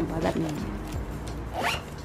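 A zip being pulled shut on a small printed cosmetic pouch, one quick rasping pull about one and a half seconds in.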